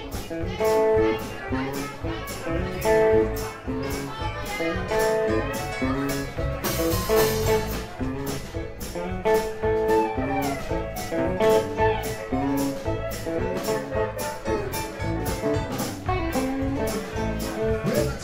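Live rock band playing an instrumental jam: guitar lines over bass and a steady drum beat, with a cymbal crash about seven seconds in.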